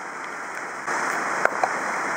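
Steady rain falling on the cover overhead, a hiss that grows a little louder about a second in.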